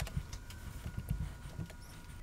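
Peeled hard-boiled eggs set one after another into a glass Kilner jar, making a series of soft, dull thuds as they land on the eggs already inside.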